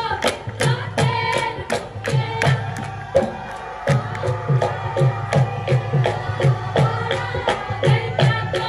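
Live Punjabi giddha folk music: women singing over a steady beat of sharp percussive strokes, about three a second. The beat drops out briefly a little past three seconds in, then resumes.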